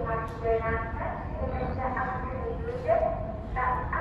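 Gulls calling repeatedly: several high, harsh, pitched calls one after another, over a steady low rumble.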